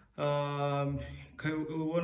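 A man's drawn-out hesitation sound: one steady held vowel of about a second at an even pitch, then he starts talking again near the end.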